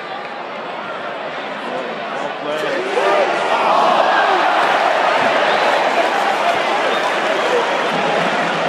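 Football stadium crowd, many voices shouting and chanting together, swelling louder about three seconds in.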